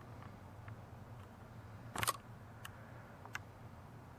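Handheld camera handling noise over a faint steady low hum: a short cluster of sharp clicks about two seconds in, then a few fainter single clicks.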